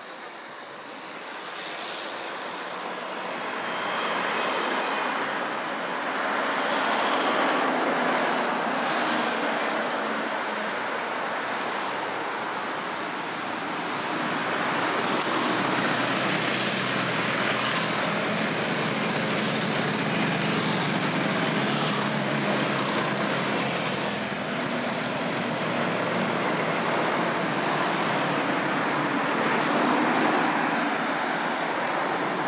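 Steady road traffic noise that builds over the first few seconds, then swells and eases gently as vehicles pass.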